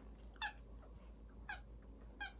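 Squeaker inside a plush sloth chew toy giving two faint, short, high squeaks about a second apart as a terrier chews it.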